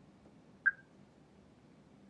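A single short high electronic beep from the fare kiosk, acknowledging a touch on its touchscreen, about two-thirds of a second in; otherwise faint room tone.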